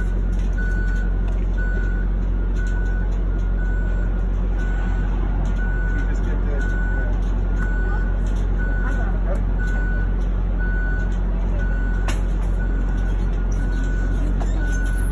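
Vehicle reversing alarm beeping about once a second over a loud, steady low engine drone.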